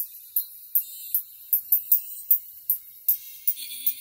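Music played only through a pair of paper-cone tweeters fed through a series capacitor, so only the treble comes through: thin, bright cymbal- and tambourine-like hits a few times a second, with no bass or midrange.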